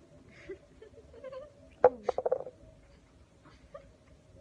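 A sharp click about two seconds in, then a short burst of high, squeaky, muffled giggling through closed lips from a girl whose mouth is full of water.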